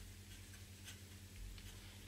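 Fountain pen nib scratching faintly on paper in a few short strokes as small handwriting is written.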